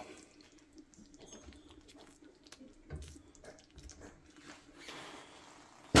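Mushroom gravy simmering gently in a stainless skillet, faint small bubbling pops and ticks, with a soft low bump about three seconds in.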